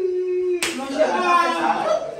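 A sharp slap about half a second in, cutting off a drawn-out, falling vocal wail, with voices going on after it.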